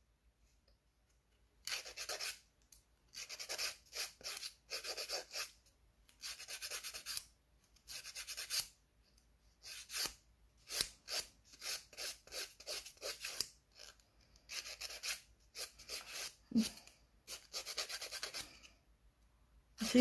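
Hand nail file rubbing across a fingernail, taking the corners off: many short strokes in quick runs with brief pauses between, starting about two seconds in.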